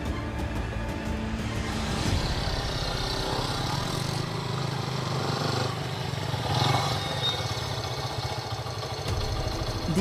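Background music, joined partway through by the engines of two small motorcycles riding in and slowing to a stop.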